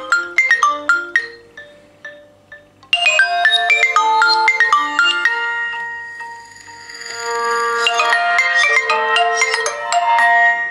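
Phone ringtones and an alarm tone sounding at once from an iPhone 4S, a Samsung Galaxy Note and a Nokia Lumia 1020: overlapping, xylophone-like chiming melodies. The sound thins between about one and three seconds in. Then a fuller, louder mix of tones comes in, dips briefly near seven seconds and builds again.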